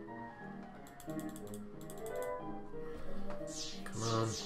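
Online slot game music with the game's sound effects: a run of fast ticks about a second in, and quick falling chimes near the end, as the gamble dial wins and spins again.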